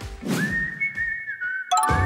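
A whistle-like sound effect holds one high tone that dips slightly in pitch, then is cut off near the end by a sudden bright, chiming music sting.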